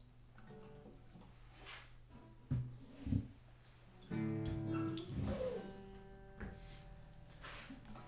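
Steel-string acoustic guitars handled while being swapped: a couple of soft knocks on the wooden bodies, then the open strings ringing faintly where they are brushed and dying away.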